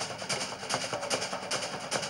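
Fast, steady drumming accompanying a Samoan fire knife dance, a rapid even beat of sharp wooden and drum strikes.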